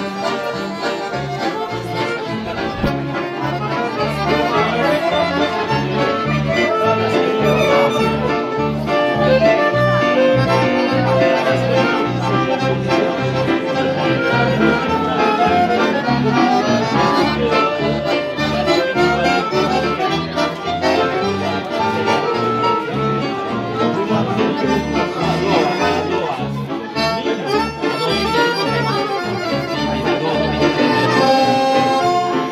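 Live music: two piano accordions playing a melody over a Korg keyboard's accompaniment with a steady bass beat.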